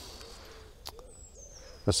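Faint, low, hoot-like bird calls in the background. A thin high whistle slides downward about a second in, and a single small click comes just before it.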